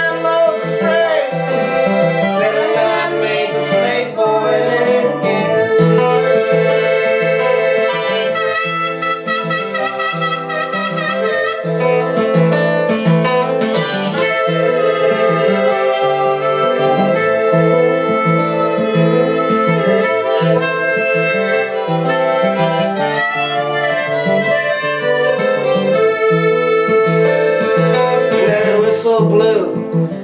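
Instrumental break in an acoustic roots song: a rack-held harmonica plays the lead over steadily strummed acoustic guitar and piano accordion.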